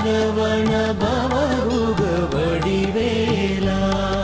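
Tamil devotional song to Lord Murugan: a melody of held, wavering notes over a steady low drone.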